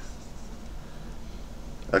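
Wacom Bamboo CTL-470 pen nib scratching lightly across the tablet's surface as loops are drawn: a faint, fine, continuous scratchy rustle.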